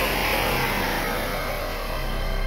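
A car passing on the road: a rush of tyre and road noise, loudest at the start and fading away.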